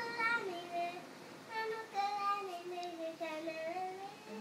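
A young girl singing a Tamil song unaccompanied, holding notes that slide between pitches, with a short break about a second in and a long wavering note near the end.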